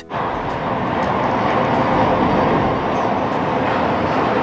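Shonan Monorail suspended car running along its overhead beam on rubber tyres, giving a steady rushing hum that swells slightly in the first couple of seconds.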